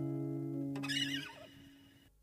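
Acoustic guitar's final chord ringing and fading out as the song ends. A brief wavering, falling squeak comes about a second in, then the sound cuts to silence.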